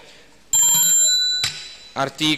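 Small brass hand bell rung with rapid clapper strikes for about a second, starting about half a second in and stopped abruptly with a knock.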